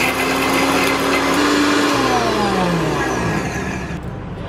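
Electric mixer grinder with a steel jar grinding biscuits into crumbs. Its motor runs with a steady whine, then winds down with a falling pitch from about two seconds in.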